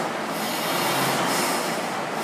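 Air rowing machine's fan flywheel spinning fast, a continuous rushing whir that swells and eases with each stroke.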